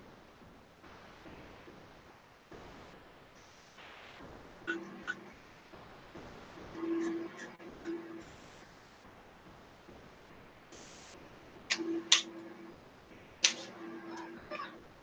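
Quiet room noise while a marker is worked on paper, then several sharp plastic clicks in the last few seconds as marker caps are handled and markers are set down.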